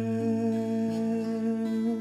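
Music: the long held final chord of a hymn, voices sustaining notes that shift pitch a couple of times.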